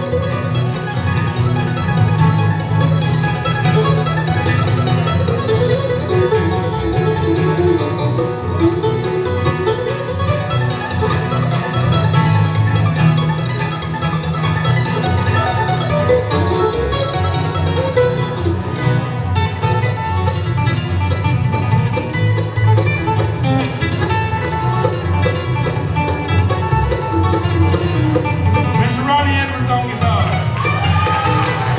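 Bluegrass band playing an instrumental on fiddle, banjo, two mandolins, acoustic guitar and electric bass guitar.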